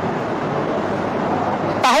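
Steady background noise like distant traffic or room hum fills a pause in the talk, with a man's voice coming back in near the end.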